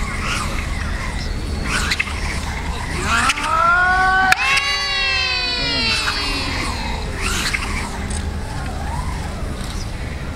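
A man's long drawn-out kiai shouts during a martial-arts demonstration. One cry rises in pitch for about a second and ends in a sharp snap about four seconds in, and a second long cry falls away after it. A steady low rumble runs underneath.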